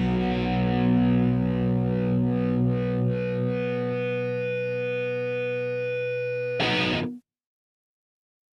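A punk rock song ending on a distorted electric guitar chord left ringing out and slowly fading, its low end dropping away about four seconds in. A short final hit comes near the end, then the sound cuts off to silence.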